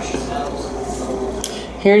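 Light metallic clicks of costume jewelry being handled on a table, one sharp click about a second and a half in, over a steady low hum.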